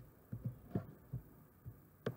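Faint, scattered typing on a computer keyboard: about five light, dull taps.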